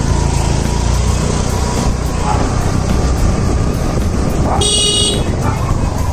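Motor scooter running as it rides along, a steady low rumble, with one short horn toot near the end.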